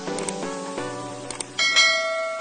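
Background music playing a run of short pitched notes, then a bright bell chime near the end: the notification-bell sound effect of a subscribe-button animation.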